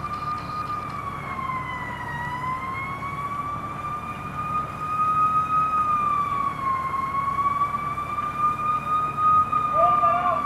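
Emergency vehicle siren in a slow wail, rising and falling in pitch every few seconds and growing louder about halfway through.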